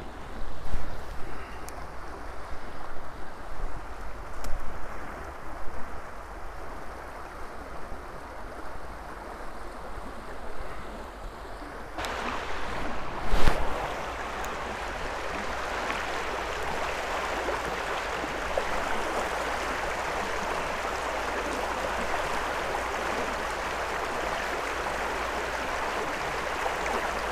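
Creek water rushing over rocks: a fast riffle, patchy at first and then steady and louder from about halfway through. A single sharp knock comes just after the rush grows louder, with uneven bumps earlier on.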